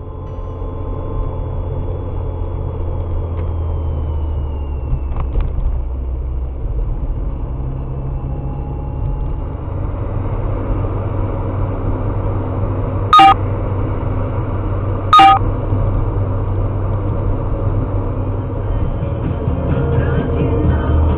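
Steady low road rumble of a car driving at speed, heard from inside the cabin. Two short, loud car-horn blasts sound about two seconds apart, roughly two-thirds of the way through.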